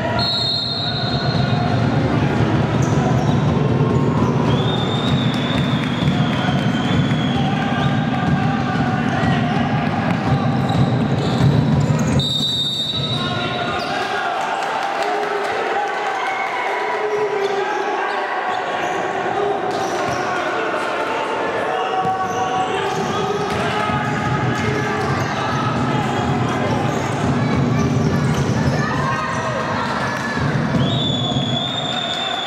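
Game sound of an indoor futsal match: players' and spectators' voices echoing in the hall, with the ball being kicked and bouncing on the wooden court. Two short high whistle blasts come, one right at the start and one about twelve seconds in.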